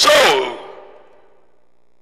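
A man's voice through a headset microphone: a loud, breathy, drawn-out "So" falling in pitch, fading within about a second into quiet room tone.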